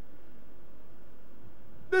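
A steady background hum with a couple of faint held tones and no other events, then a man's voice comes in right at the end.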